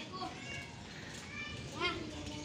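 Faint voices in the background, with a high-pitched, child-like call rising near the end, over steady neighbourhood background noise.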